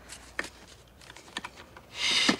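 Faint, scattered clicks and light knocks of objects being handled as someone rummages through things in search of a hidden box, with a single click about half a second in and a quick pair of clicks near the middle.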